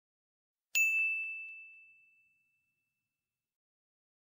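A single bright ding: a bell-like chime sound effect struck once, just under a second in, ringing out and fading over about two seconds.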